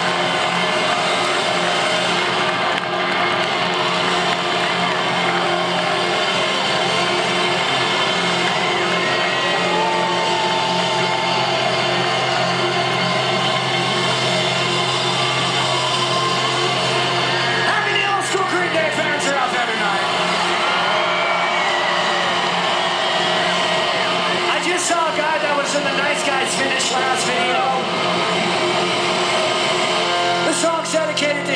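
A live rock concert between songs: the crowd cheers and shouts over a sustained low tone from the PA. The tone drops out about two-thirds of the way through, and a quick run of sharp ticks comes near the end.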